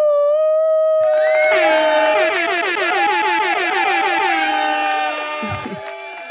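A loud, held horn-like tone, joined about a second in by more tones and then by many overlapping, wavering ones, fading near the end.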